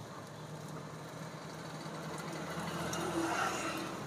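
Skewered sempolan deep-frying in a pot of hot oil, a steady sizzle, with a low steady hum underneath that grows a little louder toward the end.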